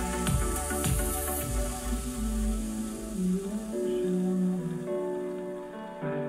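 Electronic music track played through a Devialet Phantom wireless speaker and picked up in the room by binaural microphones. Deep bass beats come about twice a second, then drop away about a second and a half in, leaving sustained synth notes and chords.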